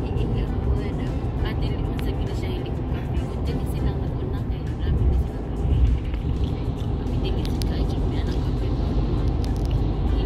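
Road noise of a car driving at highway speed, heard from inside the cabin as a steady low rumble, with music playing over it.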